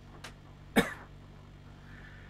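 A man's single short cough about a second in, over a faint low steady hum.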